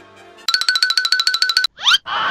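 Cartoon-style comedy sound effect: a soft held chord gives way, about half a second in, to a loud, fast warbling tone of about ten pulses a second. It ends near the end in a quick rising whistle-like glide.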